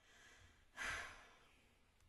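A woman sighs once, a short breathy exhale about a second in.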